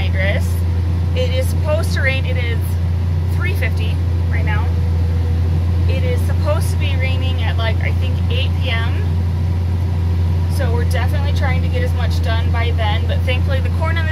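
Tractor engine's steady low drone heard from inside the closed cab during side-dressing, with a woman talking over it.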